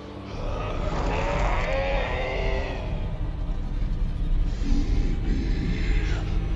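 A man's yell, wavering in pitch and lasting about two seconds, over a steady low rumble and dramatic music.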